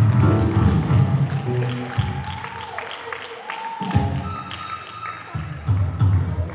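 Live band music from a family rock group on stage: drums and bass guitar carry a strong low pulse, with guitar and keyboard above, and the bass drops out briefly about three and a half seconds in.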